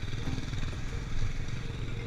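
Motorcycle engine running at road speed, heard from the moving bike with wind noise over the microphone.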